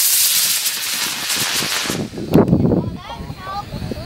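Model rocket motor burning after lift-off: a loud, rushing hiss that stops about two seconds in as the rocket climbs away. Voices follow near the end.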